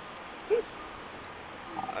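Steady outdoor city background noise, broken about half a second in by one short voiced sound that rises and falls in pitch.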